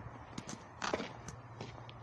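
A few soft footsteps on a paved path, irregular light taps with one short scuff about a second in.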